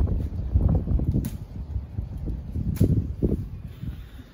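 Leaves and branches of a lime tree rustling as limes are picked by hand, with two sharp snaps, about a second in and near three seconds in. Irregular low rumbling noise sits on the microphone throughout.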